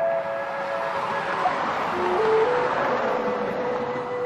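Background music of a slow flute melody, long held notes that dip and climb again about halfway through, over the rush of passing highway traffic, which swells in the middle and fades.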